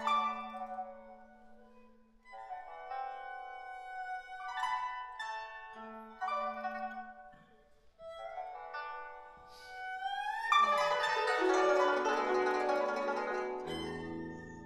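Chinese chamber trio of pipa, guzheng and erhu playing: sparse plucked notes ringing out over a held low bowed note, then, about ten seconds in, a rising sweep that breaks into a loud, dense flurry of fast plucked notes.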